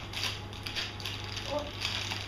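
Crinkly plastic wrapper rustling and crackling irregularly as a small packet is pulled open by hand, over a steady low hum.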